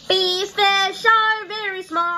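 A child's voice singing five short, high held notes in quick succession.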